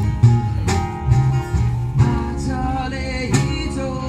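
Live band music with guitar and a singing voice over a bass line and occasional drum hits; the singing stands out in the second half.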